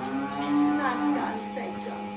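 A cow mooing once, a low call lasting about a second, over a steady electrical hum.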